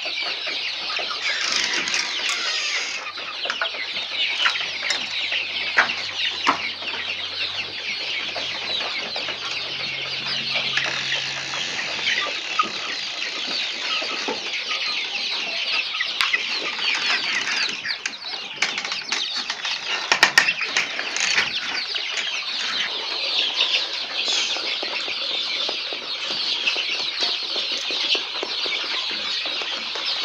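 A flock of young chickens cheeping and peeping nonstop, a dense high-pitched chorus of many birds at once, with a few short knocks about two-thirds of the way through.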